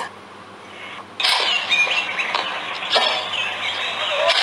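Birds chirping in a recorded outdoor ambience, coming in about a second in after a brief near-quiet gap: short, twittering calls that repeat irregularly.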